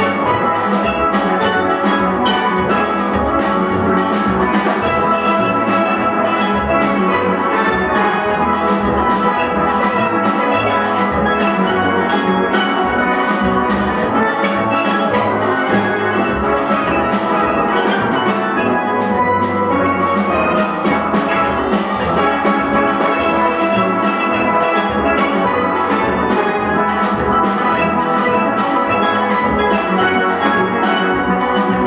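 Steel band playing live: many steelpans ringing out melody and chords together, with drums keeping a steady beat underneath.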